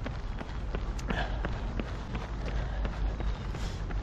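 A runner's footfalls on tarmac and his breathing, over a steady low rumble.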